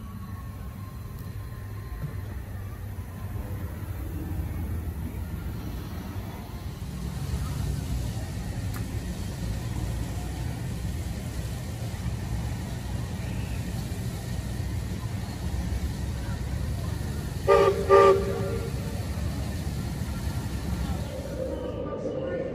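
Two short toots of a whistle in quick succession, near the end, over a steady low outdoor rumble.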